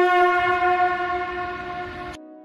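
A conch shell (shankha) blown in one long, steady held note that tapers off in loudness toward the end.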